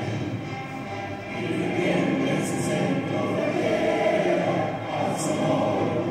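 An anthem sung by a large group of voices in unison, with musical accompaniment, continuing without a break.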